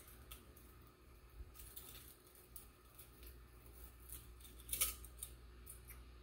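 Faint small clinks and ticks of a metal chain necklace and pendant being picked at and untangled by hand, with a slightly louder jingle about five seconds in.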